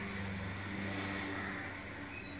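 Engine of a motor vehicle passing on the street, swelling to its loudest about a second in, then easing off.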